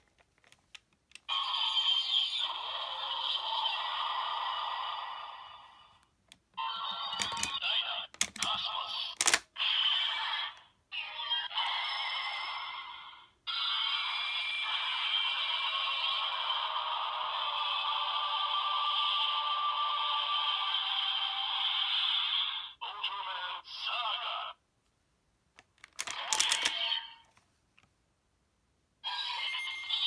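Electronic sound effects and music from a DX Ultra Z Riser toy's small speaker, playing the Dyna and Cosmos Ultra Medal sequence in several bursts with short gaps, the longest lasting about ten seconds. Sharp plastic clicks of the toy being worked come a few times around eight seconds in.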